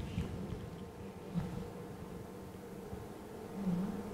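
Faint steady room hum, with a short soft murmur near the end.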